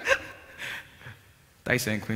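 A man's speaking voice breaks off, one short audible breath follows in the pause, and he starts speaking again near the end.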